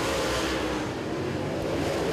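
Dirt-track modified race cars' V8 engines running at speed as the field races around the track, a steady drone of several engines together.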